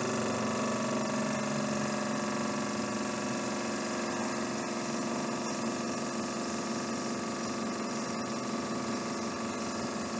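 Compound-wound DC motor and its coupled dynamometer running steadily under load, a constant machine hum with several steady tones. Its pitch sags slightly as more load is applied and the speed falls below 1500 RPM.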